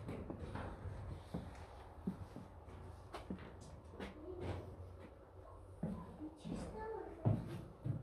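Faint, indistinct voices with scattered footsteps and knocks, and a louder thump near the end.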